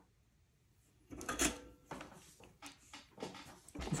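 Small handling sounds on a workbench as a wire is positioned for soldering: a short bump about a second and a half in, then faint clicks and rustles.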